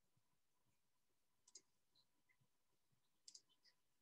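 Near silence: room tone broken by a few faint clicks, in a small group about a second and a half in and another near the end.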